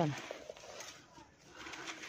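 Faint gritty crumbling of a dry, moulded chunk of mixed brown dirt and sand-cement broken in the hands, fine powder and grains trickling off it, with a few small crisp crackles.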